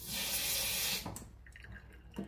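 A new kitchen mixer tap running into a stainless steel sink for about a second, then shut off abruptly.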